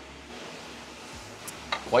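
Quiet room tone while a cup is sipped, with one faint click about a second and a half in; a man's voice starts near the end.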